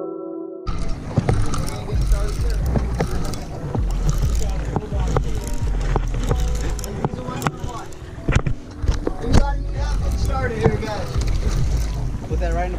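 A short musical tone fades out in the first second. It is followed by deck sound on a fishing boat at sea: a low rumble of wind and boat noise, frequent knocks and clicks from handling the rod and camera, and background voices near the end.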